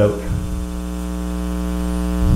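Steady electrical hum with a stack of low overtones, unchanging throughout.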